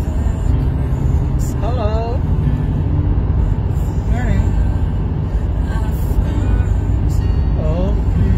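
Steady low rumble of a car driving, heard from inside the cabin, with background music under it. Short voice-like sounds rise over it three times.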